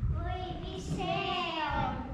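A young child's high voice delivering a drawn-out, sing-song line, the pitch sliding downward toward the end.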